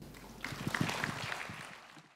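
Audience applauding, starting about half a second in and fading away toward the end.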